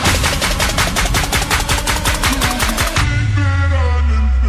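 Electronic dance music, dubstep style: a fast, even roll of snare-like hits, about eight a second, builds for about three seconds, then breaks into a deep, sustained bass drop.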